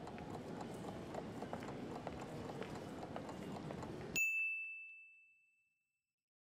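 Train-station ambience, a steady background murmur with faint clicks, cut off sharply about four seconds in by a single bright ding that rings out for about a second: a quiz timer's time's-up chime.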